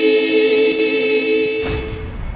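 A church choir singing unaccompanied, holding a long final chord. About a second and a half in, the chord gives way to a low rumbling boom from a TV channel's logo sting.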